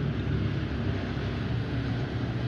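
A steady low hum with an even hiss. There are no distinct clicks or knocks.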